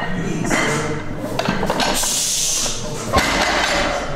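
A conventional barbell deadlift: a forceful exhale from the lifter around two seconds in, then the loaded bar with its plates set back down on the gym floor with a single sharp thud a little after three seconds in.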